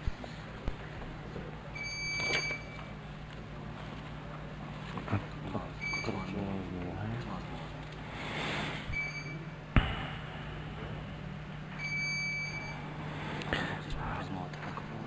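Short electronic beeps at one high pitch, four of them a few seconds apart, the first and last a little longer, from the council chamber's electronic voting system while a vote is open. A low steady hum runs underneath, with faint murmured voices in the middle.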